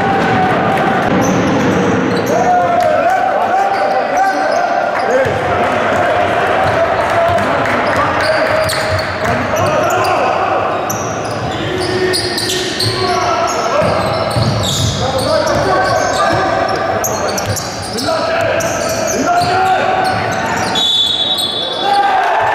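Live basketball game sound in a reverberant sports hall: the ball bouncing on the hardwood court under players' shouts and crowd voices. A referee's whistle blows once, a second long, shortly before the end.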